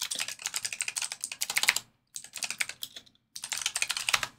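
Fast typing on a computer keyboard, in three quick runs of keystrokes with brief pauses between them.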